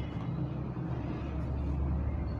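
A steady low background rumble that swells slightly toward the end.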